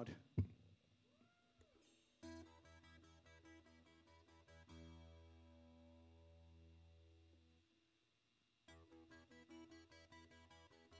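Solo guitar, played quietly: single plucked notes begin about two seconds in, then a held chord rings and fades out. After a short pause, picked notes start again near the end. Just before the first notes there is a brief arching tone that rises and falls.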